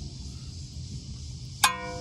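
A single sharp metallic clink near the end that rings on with a bell-like tone: a steel part or hand tool being knocked against metal, set in a quiet background.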